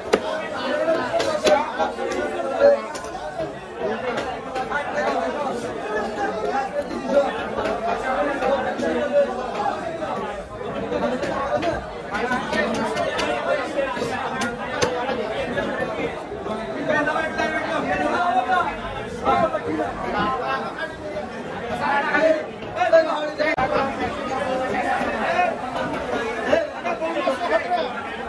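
Many people talking at once in a busy market crowd, with occasional short sharp knocks of a knife blade striking a wooden chopping block.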